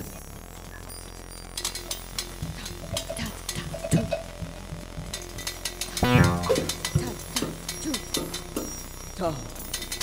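Free-improvised music: scattered clicks, ticks and metallic rattles from small hand percussion struck and shaken, with a falling pitched glide about six seconds in and more falling glides near the end.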